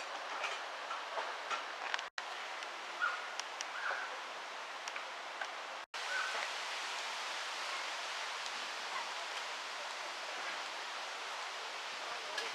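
Steady hissing outdoor background noise with a few faint short chirps scattered through it. It cuts out suddenly and briefly twice, at joins in the recording.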